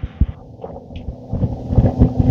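Kone hydraulic elevator car travelling up under power, its pump motor giving a steady low hum with a rumble that grows louder toward the end.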